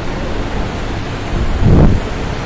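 Steady rushing noise picked up by a headset microphone, with a brief louder low rush about one and a half seconds in.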